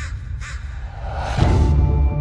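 Crows cawing several times in short harsh calls over a low droning music bed. A low hit swells in about one and a half seconds in.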